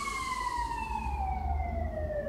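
Siren wailing, its pitch sliding slowly downward in one long sweep.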